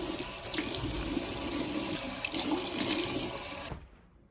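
Water running from a bathroom tap in a thin stream into a ceramic washbasin, splashing onto the metal drain grate; it stops abruptly near the end.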